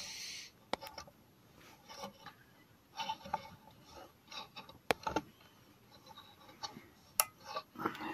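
Quiet, scattered clicks, taps and scrapes of a valve spring compressor being worked against a valve spring on a motorcycle cylinder head. There is a short hiss at the start and a few sharper clicks: one under a second in, one around the middle and one near the end.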